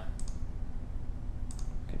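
Two short, light clicks from computer operation about a second apart, over a steady low hum.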